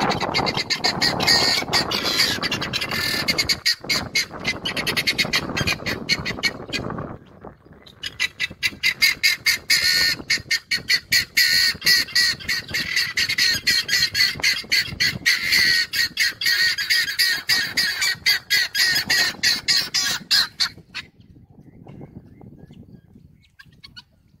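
Helmeted guineafowl calling in a fast run of harsh, repeated notes, several a second. The calling dips briefly about seven seconds in and stops about three seconds before the end.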